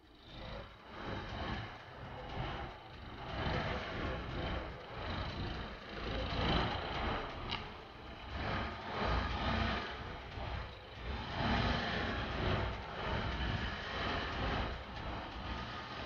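A car running at low speed while it reverses slowly into a parking space, heard with outdoor street noise: an uneven rumble that swells and fades.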